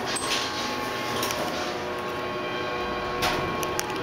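Montgomery KONE hydraulic elevator car travelling upward: a steady hum with faint even tones, with a few light clicks near the end.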